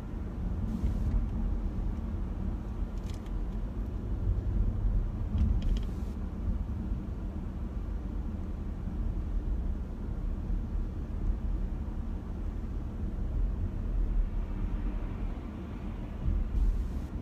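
Steady road and engine rumble of a car being driven, heard from inside the cabin: a low, even drone with no speech.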